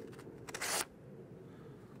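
A short papery swish about half a second in: a freshly honed by-pass secateur blade slicing through a strip of paper to test its sharpness.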